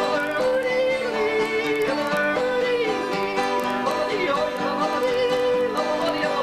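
Two acoustic guitars played together in a country style, strummed chords under a wavering, bending melody line.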